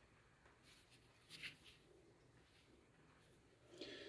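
Near silence: room tone with a few faint, short scratchy rustles as a hand turns a stone palm grinder over.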